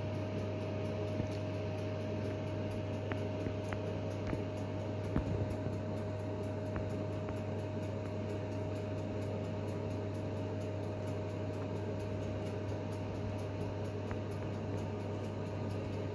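Steady low machine hum with a thin steady tone above it, and a few faint taps about three to five seconds in as a basting brush works over chicken pieces in a pan.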